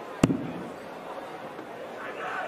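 A steel-tip dart striking a Winmau Blade 6 bristle dartboard: one sharp thud about a quarter of a second in.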